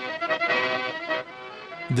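Accordion music playing back from an old reel of magnetic tape, in held chords that drop quieter after about a second. It is what is left of a concert recorded earlier on the same tape, heard where the engineer stopped the machine and the recording of the conversation ends.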